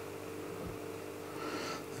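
Low steady hum of running aquarium sump equipment under a faint hiss, with a soft breath near the end.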